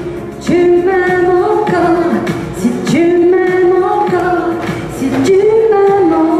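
A woman singing into a hand-held microphone, amplified, in long held notes with glides between pitches.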